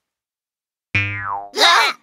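A cartoon "boing" sound effect about a second in, its pitch gliding down, followed by a short burst of voice.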